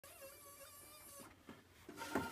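Near silence: a faint steady tone that stops a little over a second in, then one or two soft clicks.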